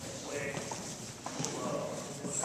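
Footsteps of several people's hard-soled shoes stepping across a hardwood floor, with a few sharp heel clicks.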